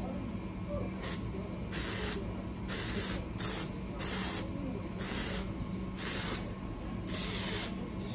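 Aerosol can of dry shampoo sprayed into the hair in short hissing bursts, about eight of them with brief pauses between.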